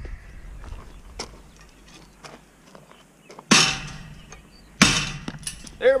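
Two loud crashes of junk being knocked off a scrap pile, about a second and a half apart, each trailing off in a rattle, after a few light clicks.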